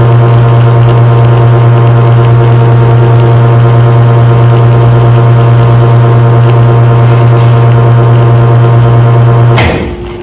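White Eagle espresso machine's pump running during a shot pull, a loud steady hum with overtones. It cuts off suddenly near the end as the shot is stopped at about 32 seconds.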